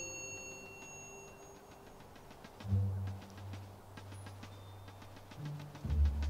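Soundtrack music: a bell-like chime rings out and fades at the start. Low sustained bass notes come in about three seconds in, over a soft, even ticking.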